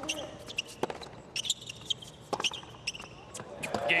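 Hard-court tennis rally: sharp racket-on-ball strikes and ball bounces at irregular intervals, with squeaks of tennis shoes on the court. The crowd starts to swell near the end as the point is won.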